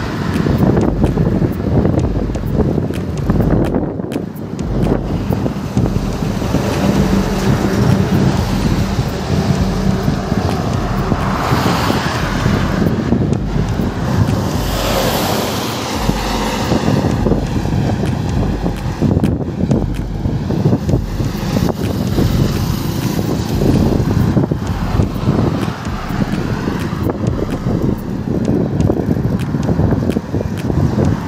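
Wind buffeting the microphone of a camera on a moving bicycle, with highway traffic going by. A large vehicle, a bus, passes close about halfway through, swelling and fading.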